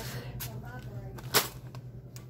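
A single sharp click or knock about a second and a half in, over a steady low hum, with a weaker click shortly before it.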